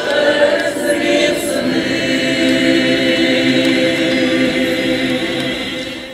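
Folk choir singing slow, sustained chords, fading out near the end.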